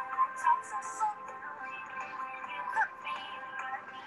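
Background music with a sung vocal line, playing on during the workout.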